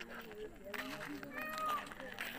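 Several people talking at once, with a high-pitched, drawn-out call rising over the chatter near the end.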